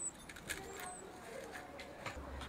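Faint scraping and light clicks of a small metal tool picking gristle and sinew out of a boiled deer skull's nasal cavity, metal against bone.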